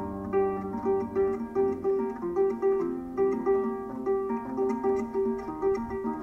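Solo harp playing an instrumental passage without voice: a steady, repeating pattern of plucked notes, about three a second.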